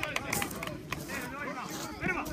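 Players' voices calling out across a grass football pitch during play, with a few short knocks mixed in.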